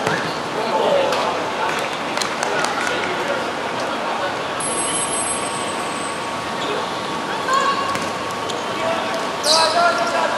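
Live sound of a five-a-side football game on a hard outdoor court: players calling out, and the ball being kicked and bouncing in sharp thuds, over a steady background hum.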